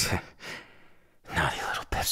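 A man's breathy sighs close to the microphone: a faint exhale after a couple of spoken words, then a longer, louder sigh near the end.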